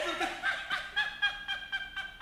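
Laughter: a high-pitched laugh in a quick run of short pulses, about four a second.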